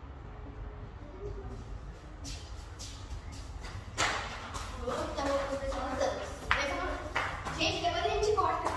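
Young girls' voices, faint at first, then close and loud from about halfway through, with light knocks or steps.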